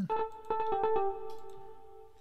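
A short arpeggio pattern played on a software synth: a quick run of pitched notes, about five a second, for roughly a second, after which the last notes ring on and fade out.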